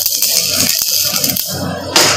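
Manual metal arc (stick) welding of mild steel with an MS electrode: the arc hisses and crackles steadily, eases off about one and a half seconds in, and a short sharp burst comes near the end as sparks fly.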